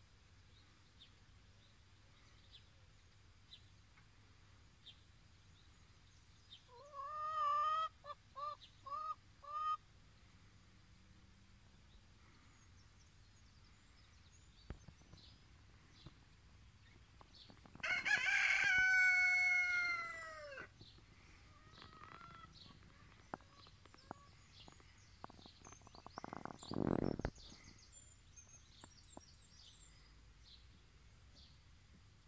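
Domestic chickens calling: a quick run of four or five short calls about seven seconds in, then one long, loud, crow-like call about eighteen seconds in that falls away at the end. A short low sound follows near the end, with faint small-bird chirps throughout.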